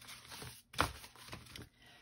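Soft handling noises: paper card and hands rustling and brushing on the work surface, in a few short scrapes, the loudest about a second in.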